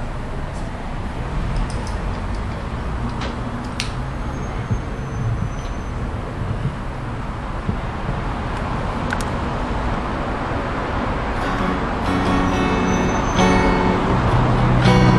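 Band tuning up and checking instruments: scattered electric bass and guitar notes and a few clicks over a steady low rumble, with clearer pitched notes near the end.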